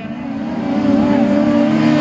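Autograss racing cars' engines running hard on a dirt track, growing louder as the cars come closer, with the pitch rising slightly about halfway through.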